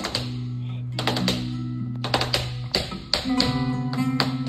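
Live flamenco music: guitar playing over held low notes, with sharp percussive taps struck many times in an uneven rhythm.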